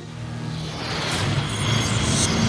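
A television programme ident's rising whoosh sound effect over a low drone, swelling steadily louder.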